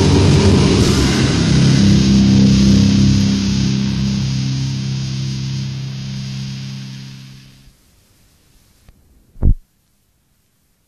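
The end of a death metal track: the band plays on for a moment, then a final distorted guitar chord is left ringing and fades away over about five seconds. Near the end there is a faint click and a short low thump.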